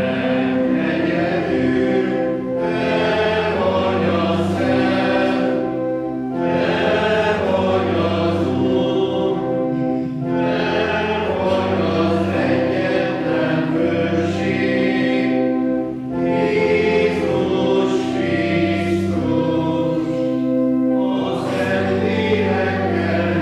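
Choir or congregation singing a liturgical hymn in phrases of a few seconds each, with steady held low tones sounding beneath the voices.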